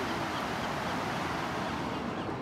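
Steady rush of ocean surf breaking on a beach, with wind on the microphone.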